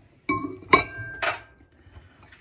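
A ceramic mug clinking against a microwave's glass turntable plate as it is set down and shifted into place: three knocks, the middle one loudest, each ringing briefly.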